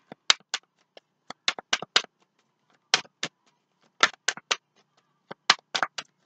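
Tarot cards being shuffled and handled in the hand: a run of short, sharp card snaps and flicks, coming in irregular clusters of two to four.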